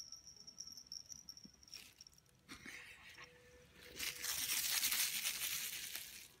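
A soft rustling, scuffing noise that swells for about two seconds in the second half, with a weaker scuffle a little before it, over a faint steady high whine early on.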